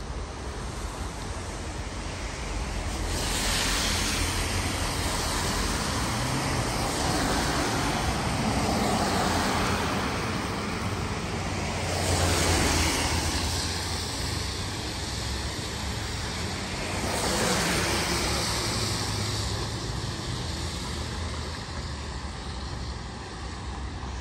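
Road traffic passing on a wet street: the hiss of car tyres on wet asphalt swells and fades as about four cars go by, over a steady background of traffic noise.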